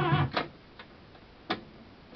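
Music with singing played from tape on a Sony 230 reel-to-reel deck cuts off a fraction of a second in as the deck is stopped. Two sharp mechanical clicks from the deck's controls follow, about a second apart.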